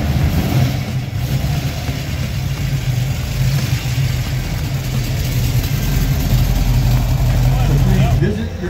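Classic cars' engines running as the cars roll slowly past at low speed: a steady, deep exhaust rumble that grows slightly louder toward the end.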